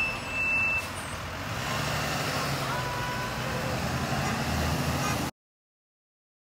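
School bus driving past with its engine running, a steady rumble that grows from about two seconds in. There is a brief high beep near the start, and the sound cuts off suddenly about five seconds in.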